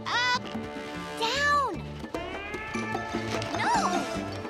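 Three short, high-pitched squealing calls from a cartoon character, each rising and falling in pitch, near the start, about a second and a half in, and near the end, over background music.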